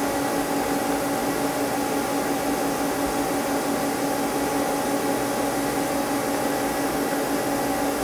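Steady hum of an idle Mazak CNC lathe: a constant drone with a few unchanging tones over an even fan-like hiss.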